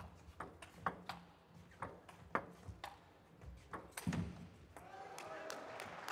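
Table tennis rally: the ball clicking off bats and table in quick, irregular succession, about two to three hits a second, ending with a heavier thud about four seconds in.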